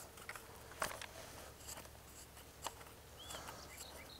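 Faint metallic clicks and light handling noise as a rifled sabot choke tube is threaded into a shotgun's muzzle.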